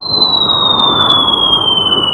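Cartoon falling-whistle sound effect: one loud whistle gliding slowly down in pitch over a rushing hiss, the sound of an object dropping from the sky.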